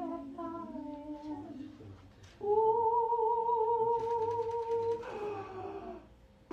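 A woman's wordless singing: a short hummed phrase that trails off, then after a brief pause one long high note held for about two and a half seconds and sliding down in pitch near the end.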